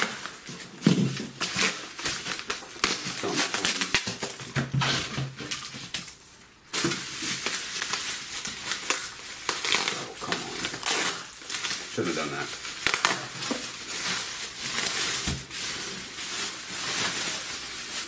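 Plastic wrap on bundled comic books crinkling and rustling as the bricks are handled and unwrapped, in irregular crackles with a short lull about six seconds in.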